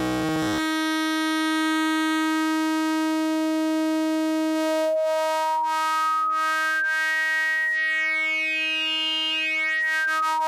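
Hexinverter Mindphaser complex oscillator droning on one steady pitch. It is buzzy and rough for the first half second, then settles into a clean tone. About halfway in, a knob on the oscillator is turned and a bright overtone climbs steadily higher for several seconds, then drops back near the end.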